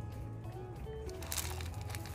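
Cactus potting substrate poured from a tin can into a plastic tub, a gritty rustling hiss that starts a little past halfway, over faint background music with a few soft sustained notes.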